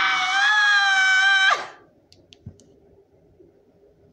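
A woman's loud, high-pitched scream, held steady and breaking off with a falling pitch about a second and a half in. A few faint clicks follow.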